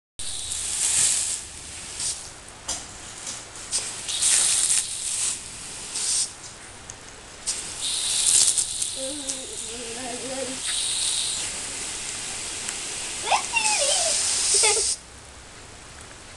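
Water jet from an oscillating lawn sprinkler hissing in repeated bursts as a wire fox terrier lunges and bites at it, with sharp splashing clicks between; the spray sound cuts off suddenly about a second before the end.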